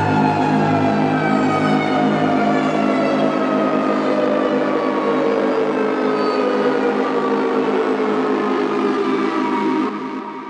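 Dark techno track: a sustained, siren-like synth tone that slowly falls in pitch throughout, over a low pulsing beat that drops out about two and a half seconds in. The sound drops away sharply at the very end.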